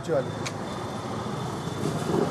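Steady background traffic noise during a pause in speech, with one brief click about half a second in.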